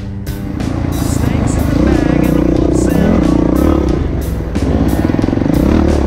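Off-road motorcycle engine running and revving under way, mixed with rock music with a steady beat. The engine grows louder over the first two seconds.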